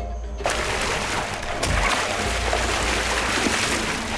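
Heavy, continuous splashing and churning of water as a crocodile thrashes in it, setting in about half a second in.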